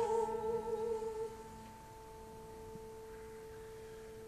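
A woman's operatic voice holds a note with vibrato that dies away about a second in, leaving a quiet, steady held piano chord.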